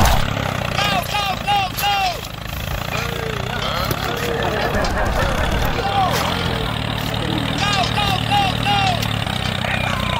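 Mini tractor engine running steadily at a low, even pitch. Over it, a short high chirping call repeats in quick runs of about four, once about a second in and again near the end.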